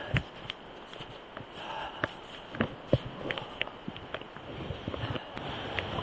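A hiker's footsteps trudging through deep, wet snow at an irregular pace, with scattered clicks and knocks from trekking poles and gear, over a steady hiss.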